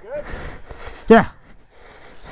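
A man's voice making short, wordless sounds: a brief one at the start and a louder, falling-pitch exclamation about a second in, with faint background noise between.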